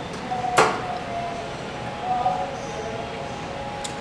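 A single sharp clink of tableware or glass about half a second in, over quiet room background with faint steady tones.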